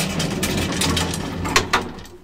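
Graham Brothers traction elevator running, its hoist machine giving a steady low hum while the car and its bar gate rattle and click. The hum dies away near the end as the car comes to a stop.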